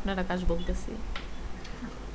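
A person's voice heard over a video call, speaking briefly at the start, then a quieter stretch with a couple of faint clicks.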